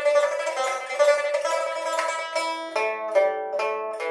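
Solo pipa (Chinese lute): a fast, unbroken stream of plucks on a held pitch through the first half, then slower single plucked notes, each left to ring, in the second half.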